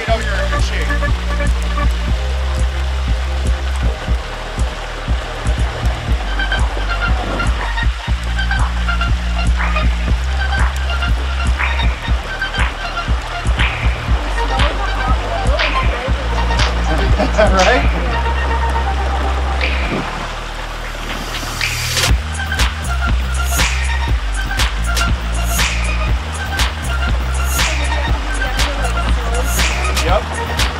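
Music with a steady bass line and drum beat, which dips briefly about twenty seconds in. Underneath, hot oil bubbles hard in a turkey fryer pot as a whole turkey is lowered slowly into it.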